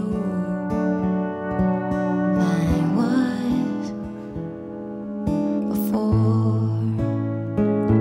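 Pedal steel guitar playing long sustained notes, with a rising slide about two and a half seconds in, over a strummed acoustic guitar, in a country song.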